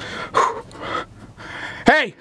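A man breathing hard and gasping in short breathy bursts, with a loud voiced cry starting just at the end.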